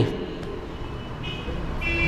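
A vehicle horn, a held pitched tone, sounds from about a second in and grows stronger near the end, over a low traffic rumble.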